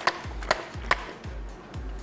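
A chilled plastic water bottle is banged hard three times, with sharp knocks about half a second apart. This is the shock meant to make the supercooled water inside freeze all at once. Background music with a steady beat plays under it.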